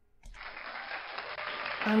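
Recorded applause sound effect played from a 'yay' sound button, starting about a quarter second in and running on steadily; it sounds muffled, lacking the top end of the voice.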